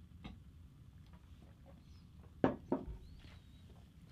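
Men quietly drinking beer from glass mugs, then two short knocks about two and a half seconds in as the heavy glass mugs are set down on the table.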